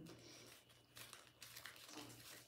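Faint crinkling of a small piece of paper being handled and unfolded in the hands, a few soft crackles over near silence.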